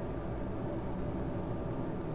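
Steady low hum and hiss of room tone, with no distinct events.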